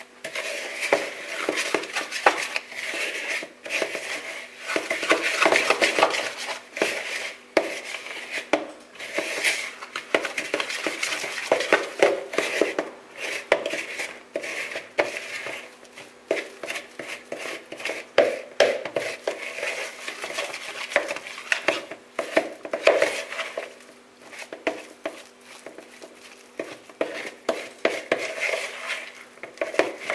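A metal fork beating a thick dough of egg and powdered milk in a plastic bowl: quick, continuous clicking and scraping of the fork against the bowl, with a few short pauses.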